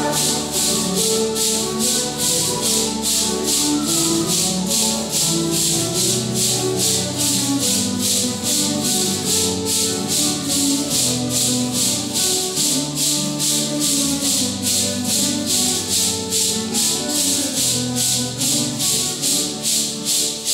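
Many maracas shaken together in a steady beat, about two strokes a second, over acoustic guitars and other instruments playing a Santo Daime hymn tune.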